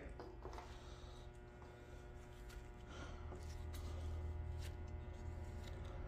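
Faint steady low hum, with a few light clicks of engine parts being handled.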